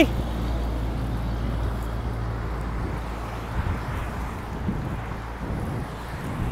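Road traffic on a multi-lane road: a steady hum of passing cars, with a low engine drone that fades out a couple of seconds in.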